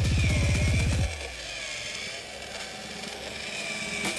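Electronic background music with a fast repeating low beat that drops away about a second in, leaving a quieter stretch with a thin wavering tone.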